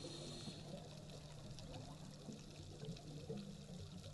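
Faint underwater ambience: bubbling water from scuba divers' exhaled air, over a low steady hum.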